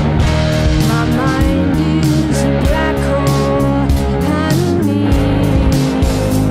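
A rock band playing psychedelic rock: electric guitar playing lines with pitch bends over electric bass and a drum kit with steady drum and cymbal hits.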